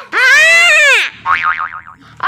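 Cartoon-style comedy sound effect: a loud pitched tone that swoops up and back down, followed by a quieter warbling tone that wobbles up and down about four times.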